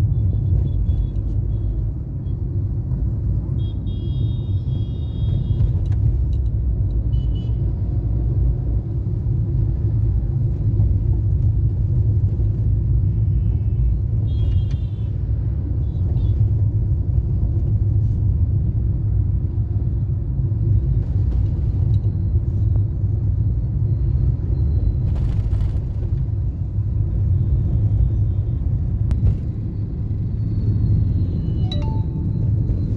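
Car cabin noise while driving through town traffic: a steady low rumble from the car's engine and tyres, with a few brief high-pitched beeps now and then.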